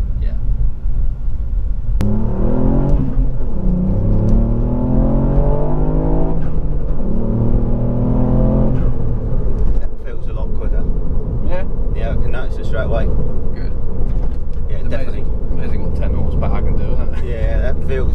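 Ford Fiesta ST MK8's turbocharged 1.5-litre three-cylinder engine, heard from inside the cabin, pulling hard under full throttle: the revs climb, drop at an upshift, climb again, drop at a second upshift and climb once more. After that the car settles to a steady cruise with road and tyre rumble.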